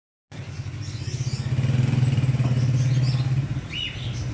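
A motorcycle engine running as it passes, its steady hum growing louder and then dropping away near the end. A short bird chirp just before the end.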